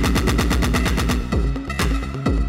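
Electronic dance music with a fast drum roll of about a dozen hits a second over the bass for the first second and a half, then the regular beat returning.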